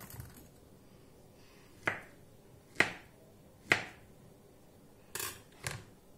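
Kitchen knife cutting through a banana onto a plastic cutting board: three sharp knocks about a second apart, then two shorter, scratchier cuts near the end.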